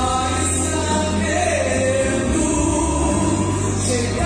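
A woman singing a Portuguese-language gospel song into a handheld microphone over instrumental accompaniment with a steady, sustained bass.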